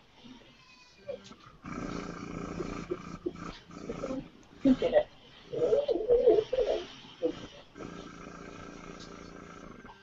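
The small air pump of an eBrush marker airbrush buzzing steadily in two runs of a second or two, one early and one near the end, stopping in between. Faint, indistinct talking fills the middle.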